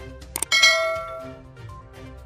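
Subscribe-button animation sound effect: two quick mouse clicks, then a bright bell ding that rings out and fades over about a second.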